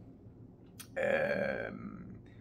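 A man's short wordless vocal noise, a burp-like or grunting 'ehh', about a second in, lasting under a second and tailing off, just after a small mouth click.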